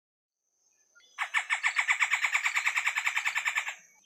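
Red-bellied woodpecker giving a fast, even run of about ten sharp notes a second, lasting about two and a half seconds and starting a second in.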